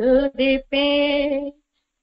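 A woman singing a Tamil Christian song unaccompanied, ending a phrase on a held note; the singing stops about one and a half seconds in.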